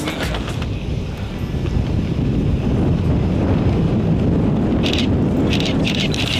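Wind buffeting the camera's microphone during a tandem parachute descent and landing: a steady low rumble with no tune or voice in it.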